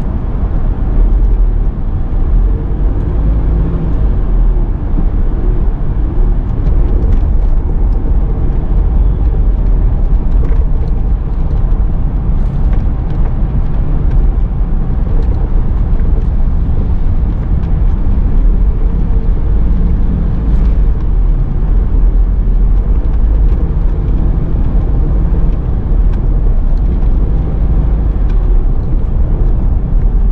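A moving car's engine and road noise heard from inside the cabin: a loud, steady low rumble, with a faint engine hum that drifts up and down in pitch as the car speeds up and slows in traffic.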